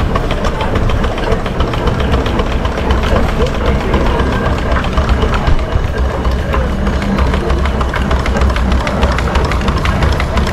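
Miniature steam traction engine running along a street while towing a passenger trailer: a steady mechanical clatter over a continuous low rumble.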